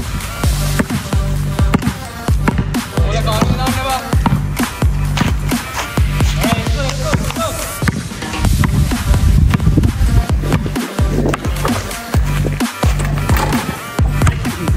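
Background music with a heavy, steady bass beat.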